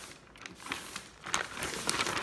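Gift-wrapping paper rustling and crinkling as it is handled, in short irregular crackles that get louder over the second half.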